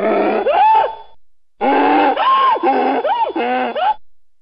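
Mule braying in two bouts, a short one and then a longer one of about two seconds, the pitch swinging up and down in hee-haw cycles. It sounds like a played-back recording, thinner in the highs than the room sound around it.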